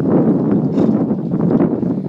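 Wind buffeting the microphone: a loud, steady, low rush that covers any hoofbeats of the cantering horse.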